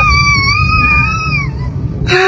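One long, high-pitched scream with a wavering pitch, fading out about a second and a half in, over a steady low rumble.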